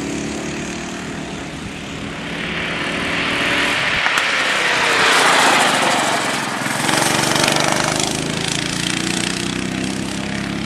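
Small single-cylinder Honda cadet kart engines running around a circuit. One kart draws near and passes close by, loudest about five to six seconds in, then fades.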